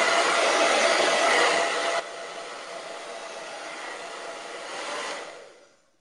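Handheld hair dryer blowing, a steady rush of air with a faint motor whine. About two seconds in it drops abruptly to a quieter level, then dies away near the end.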